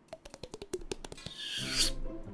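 Hands and knees slapping and rubbing on wet, slippery plastic sheeting as people crawl up it: a quick run of sharp taps, then a rising rush of noise near the end as one of them slides back down.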